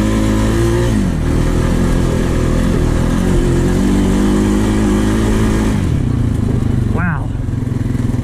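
Honda Rancher 420 ATV's single-cylinder engine running hard under throttle. Its pitch falls about a second in, then falls again near six seconds as the revs drop away.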